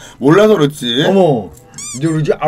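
A person's voice drawing out a word in an exaggerated sing-song: two long sounds, each rising and then falling in pitch. Near the end comes a brief high wavering chirp.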